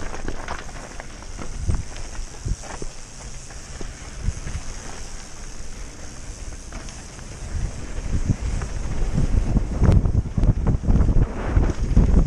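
Wind buffeting the microphone of a downhill mountain bike, with the tyres rolling over a dirt trail and the bike knocking and rattling over bumps. The rumble grows louder from about two-thirds of the way through.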